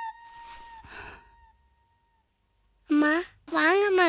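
A held flute note fades away over the first two seconds, with two soft breathy sighs in the first second. After a moment of silence, a high-pitched voice cries out in sharply wavering tones near the end.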